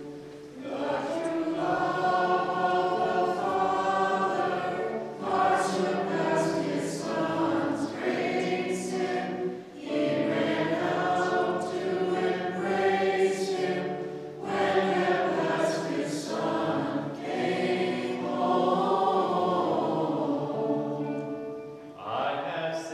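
Voices singing a liturgical hymn together in long phrases, with brief breaks between lines.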